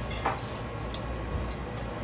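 Quiet, steady low hum with two faint light clicks, one just after the start and one about a second and a half in.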